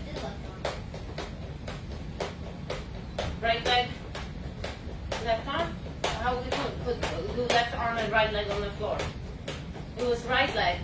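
Steady, evenly spaced sharp taps, about three a second, with voices talking over them.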